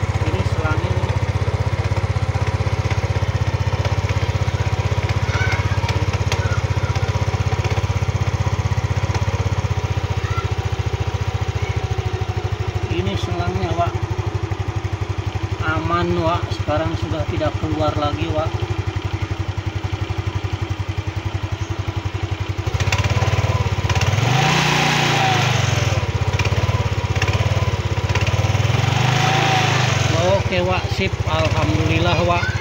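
A Yamaha Mio scooter's small single-cylinder four-stroke engine runs steadily just after its carburetor has been reassembled, now without fuel leaking from the overflow hose. It grows louder twice near the end.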